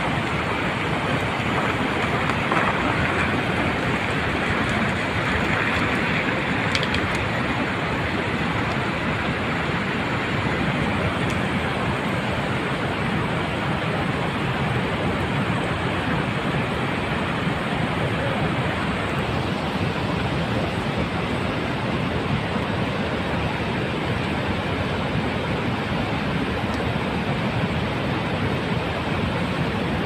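Wet snow avalanche pouring down a stream gully: a steady rushing noise that holds even throughout.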